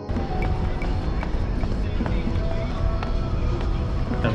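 Footsteps of two people in sneakers walking down concrete steps, with short scuffs and taps, over a steady low rumble and faint background voices.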